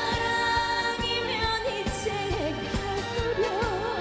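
A woman singing a Korean song with wide vibrato, backed by a band or backing track with a steady drum beat.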